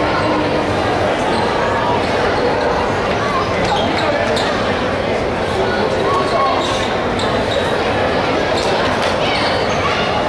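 Crowd chatter filling a school gymnasium, with a basketball bouncing on the hardwood court, typical of a shooter dribbling before a free throw.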